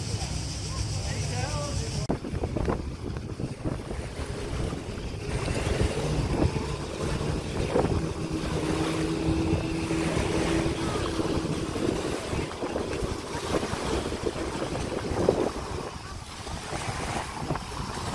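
Small waves washing onto a sandy shore, with wind on the microphone. From about six seconds in, a motorboat's outboard engine hums steadily for several seconds.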